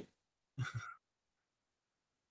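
A brief breathy voice sound, like a short sigh or soft chuckle in two quick pulses, about half a second in; otherwise the line is silent.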